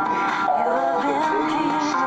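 Music with a singing voice holding and sliding between wavering notes over sustained accompaniment, recorded off a screen's speaker.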